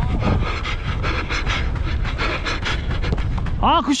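Heavy panting of a footballer sprinting with a head-mounted camera, over rhythmic footfalls and low rumble on the microphone; a player shouts near the end.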